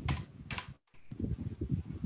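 Computer keyboard being typed on, a quick, irregular run of key clicks, with a brief gap where the audio drops out completely a little before the middle.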